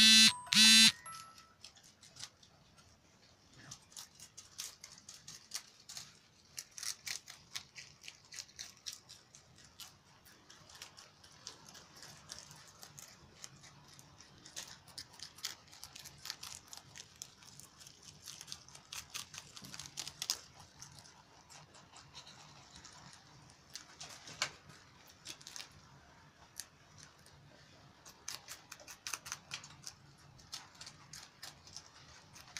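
Rustling and crisp crunching of leafy green stalks as rabbits nibble at them, heard as an irregular run of short sharp ticks and snaps. At the very start come two loud, short pitched calls.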